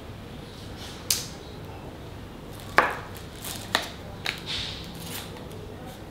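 Small hard clicks and taps of glass medication vials and plastic flip-off caps being handled on a tray: four sharp clicks, the loudest nearly three seconds in. A short papery rustle about halfway through fits an alcohol-swab packet being opened.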